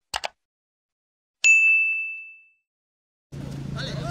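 Two quick clicks, then a single bright bell-like ding that rings out and fades over about a second: a subscribe-button sound effect of mouse clicks and a notification chime. Near the end a steady background noise with a low hum comes in.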